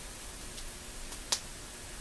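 Hands wrapping electrical tape around a small battery pack and wires: faint handling noise with one sharp click about a second and a half in.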